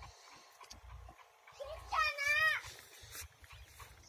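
A single wavering, bleat-like animal call about half a second long, about two seconds in, over faint low thumps.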